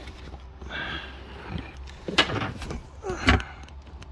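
Handling noises from hands working in a car's rear seat cushion and latch mechanism: rustling and scraping, with two sharp clicks about two seconds and three seconds in, the second the louder.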